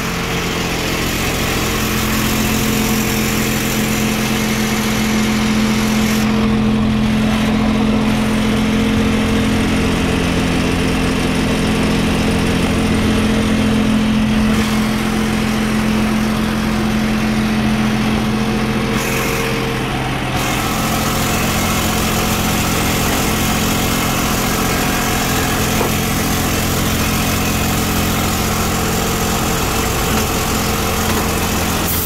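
A 1994 5,000-gallon jet fuel truck's engine and fuel pump running steadily while jet fuel is pumped out through the delivery hose and meter.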